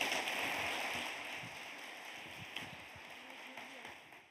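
Audience applause, gradually fading.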